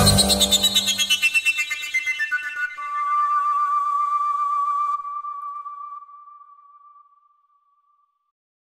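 Koncovka (Slovak overtone flute) ending the tune with a run of notes stepping downward, with rapid pulsing, while the band's last chord dies away. The run ends on one long held high note that fades out about seven seconds in.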